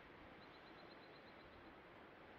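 Near silence with a faint, high bird trill: a quick run of about a dozen evenly spaced chirps lasting just over a second.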